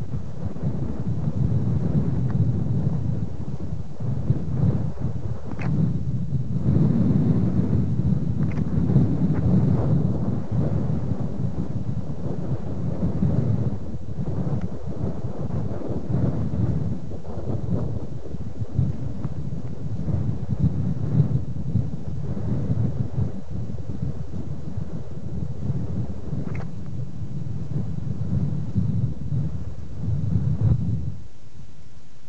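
Wind buffeting the camcorder microphone: a continuous low rumble that swells and falls.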